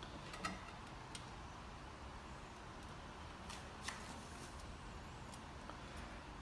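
Quiet room tone with a few faint clicks and taps as a glass display cover is handled and set down over the clock's base.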